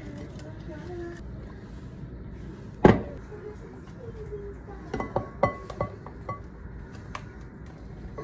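Kitchen handling sounds on a glass bowl: a single sharp knock about three seconds in, the loudest sound, then a run of lighter clicks and taps a couple of seconds later as sliced kiwi is tipped from a plastic container into the glass bowl of pineapple.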